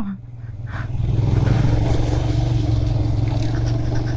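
Royal Enfield Himalayan's single-cylinder engine pulling the motorcycle along a rough dirt track, building up over the first second and then running at a steady low throttle.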